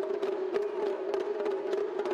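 An ensemble of small, tightly tuned shime-daiko drums struck with sticks, giving sharp, high cracks over a steady ringing tone. There are no deep drum strokes.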